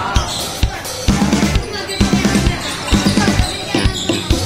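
Basketball being dribbled on a hard court, a series of sharp bounces, over loud background music with a heavy bass line and drum beat.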